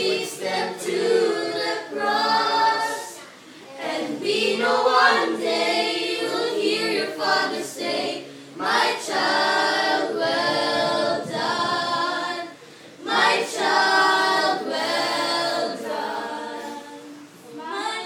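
A group of children singing a worship song together without instruments, in phrases with brief pauses between them.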